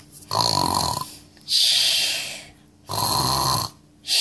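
A person imitating snoring for a puppet character: two rasping snores on the in-breath, with a long hissing out-breath between them.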